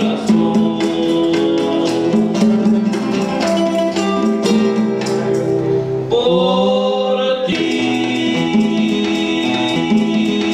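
Live bolero in the Yucatecan trova style: two acoustic guitars picking and strumming, with bongos and shaken hand percussion keeping a steady rhythm, and male voices singing.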